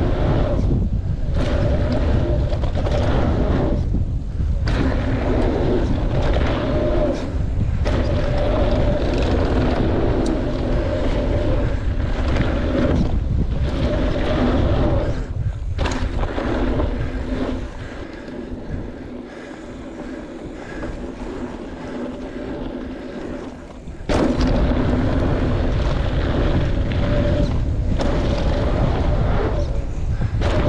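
Mountain bike ridden fast down a dirt trail: wind rushing over the camera microphone and tyres rolling on hardpacked dirt, with a steady whirring tone running through it. It drops quieter for several seconds past the middle, then comes back loud.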